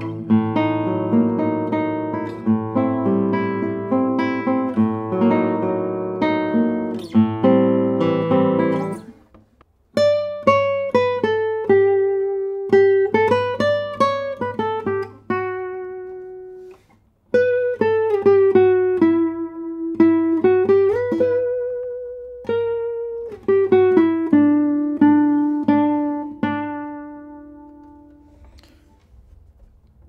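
1967 José Ramírez III classical guitar with cedar top and Brazilian rosewood back and sides, played fingerstyle on nylon strings: a dense arpeggiated passage over bass notes, then after a brief pause a slow melody of held treble notes with vibrato, the last note fading out near the end. The tone is very brilliant but not harsh.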